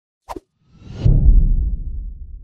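Logo intro sound effect: a short pop, then a whoosh that lands on a loud, deep hit about a second in, which slowly dies away.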